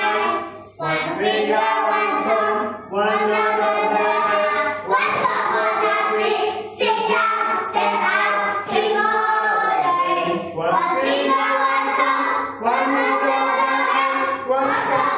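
Children singing a classroom English-learning song in phrases, with backing music.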